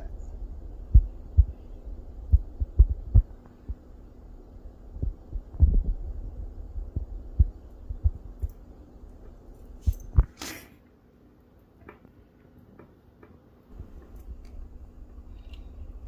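Irregular dull thumps and rubbing from hands working Cat 5e wires into a clear RJ45 pass-through plug right by the microphone, most of them in the first ten seconds. A short exhale about ten and a half seconds in, then a few faint ticks.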